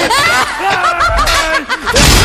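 An eerie laugh used as a horror sound effect: a quick run of short notes sliding up and down in pitch, loud.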